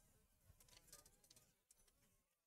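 Near silence, with only very faint traces of sound.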